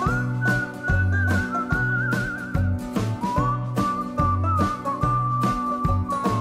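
Country song with a whistled melody over bass and a steady beat: one long whistled note with vibrato, then a lower held note from about three seconds in.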